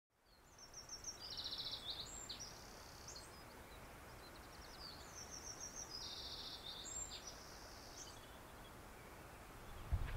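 Faint birdsong over a soft steady hiss: two song phrases of rapid repeated high notes, one starting about half a second in and the other about five seconds in.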